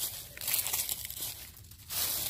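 Dry dead leaves and leaf litter crinkling and rustling as they are moved by hand, in uneven bursts that ease off briefly near the end.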